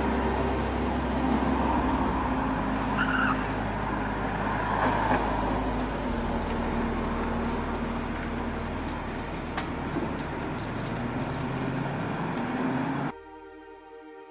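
Street traffic noise: a steady rumble of vehicle engines with cars going by, and a few brief high chirps and clicks. It cuts off suddenly about a second before the end, leaving something much quieter.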